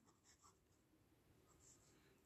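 Near silence with faint scratching of a pen writing on paper, in two short spells.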